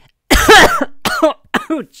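A person coughing hard into a close microphone: three loud coughs in quick succession, each dropping in pitch.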